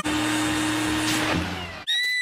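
Cartoon sound effect of a motorised backpack blower running: a steady whirring motor with a hiss. It cuts off suddenly just before the end, where a high-pitched cry begins.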